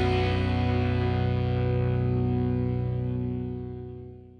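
Final held chord of a rock song on electric guitars, ringing steadily and then fading out in the last second.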